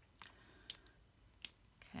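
Small metal binder clips being handled, their fold-down wire handles giving three light, sharp clicks.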